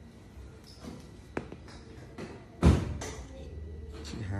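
A single short click about a second and a half in, then a louder, dull thump about a second later, during hands-on manipulation of the head and jaw.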